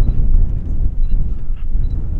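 Wind buffeting the microphone: a loud, uneven low rumble with no distinct events.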